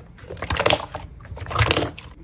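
Thick clear 'fake water' slime being stretched and pressed by hand, giving two crackly squishes about a second apart.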